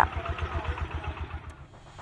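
A motor vehicle engine idling in street ambience, with even low pulses that fade away over the two seconds.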